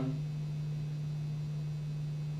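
Steady low electrical hum, one unchanging low tone with faint hiss above it.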